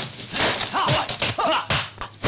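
About three short yelping cries that fall in pitch, with sharp slaps of blows between them, as in a kung fu fight.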